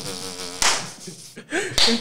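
A man laughing, drawn-out and wheezy, with a sharp breathy burst about half a second in that trails off quieter.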